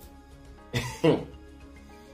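Faint steady background music, with one short falling vocal sound from a man, like a throat clear or a hum, about three-quarters of a second in.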